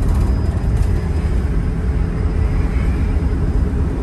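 Inside the cab of a Mercedes Sprinter turbodiesel van cruising at about 45 mph: a steady low road and engine rumble with a slight, thin high whistle over it. The owner guesses the whistle is a boost leak, perhaps a blown intake seal at the turbo, the kind of fault behind an underboost code and limp mode.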